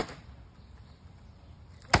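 Steel bat smashing the already shattered screen of a flat-screen Sony TV: two sharp hits, one right at the start and one near the end, each with a brief crunch of broken panel.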